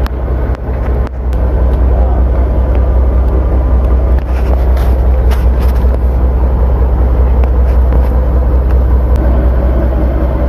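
Fishing boat's inboard engine running steadily, a deep constant drone heard inside the wheelhouse.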